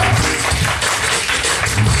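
Vocal percussion (beatboxing) keeping a samba groove: rapid clicks and hi-hat-like ticks over low kick-drum thumps, with little singing.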